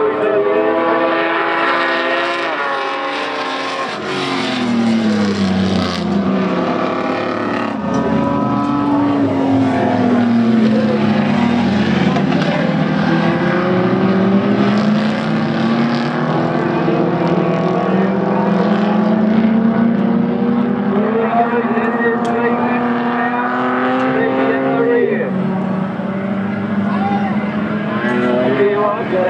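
Modified-class dirt-circuit race car engines running hard, several cars together, their engine notes rising and falling over several seconds as the drivers accelerate and lift off. About 25 seconds in, one note falls sharply.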